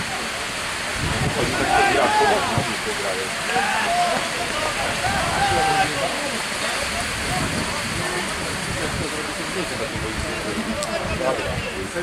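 Steady rushing noise of wind on the microphone, with low buffeting throughout. Shouting voices from the pitch come through between about two and six seconds in.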